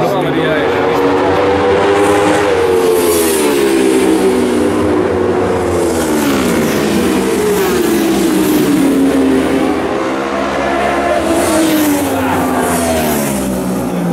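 Racing motorcycles passing at speed on a road course, their engine note falling sharply as each goes by, twice.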